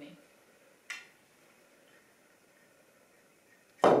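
Pool cue striking the cue ball: one sharp, loud knock near the end, after a faint click about a second in.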